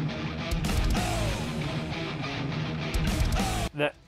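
Heavy metal music: a distorted electric guitar riff over bass and drums, cutting off abruptly near the end, with a short laugh just after.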